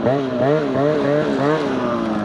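Snowmobile engine being blipped on and off the throttle as the sled works over a snowy bank, its pitch rising and falling about five times, then dropping away near the end.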